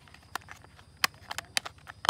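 Several short, sharp plastic clicks and taps as a battery compartment cover is slid and pressed into place on a plastic toy mammoth's body, with the loudest clicks about a second in.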